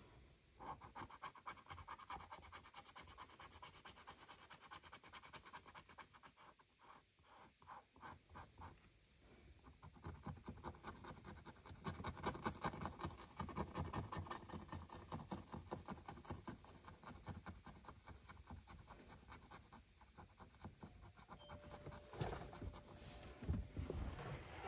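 A thin pointed tool scratching the scratch-off coating from a paper scratch card in quick, continuous strokes, quiet at first and louder from about halfway through.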